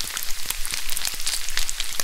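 Bacon and eggs sizzling on a stovetop griddle and frying pan: a steady crackle of many small irregular pops.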